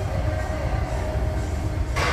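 Steady low rumble of a large gym's room noise, with faint tones of background music over it.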